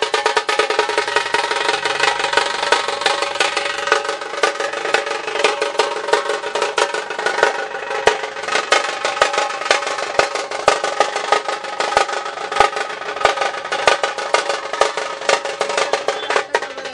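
Festival music: fast, dense drum and percussion strikes, about seven a second, over a steady held melodic tone.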